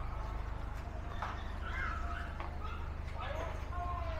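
Street background: a steady low hum, with voices of people talking in the background and a few light knocks.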